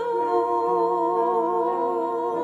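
Two women singing in harmony, holding long notes with vibrato.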